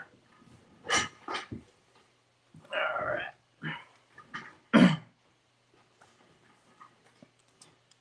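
Scattered handling clicks and knocks, with a short throaty vocal noise from a man about three seconds in and a sharp, louder knock about five seconds in.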